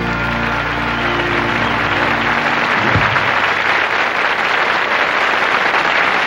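Studio audience applauding, with the band's final held chord ringing under the clapping and fading out over the first two seconds or so.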